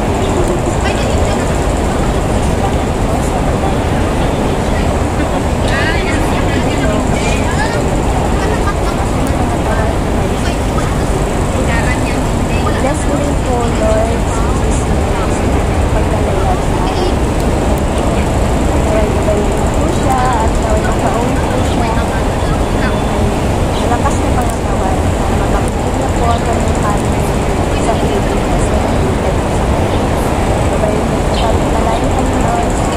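Loud, steady outdoor background noise filling the whole stretch, with people's voices talking faintly underneath now and then.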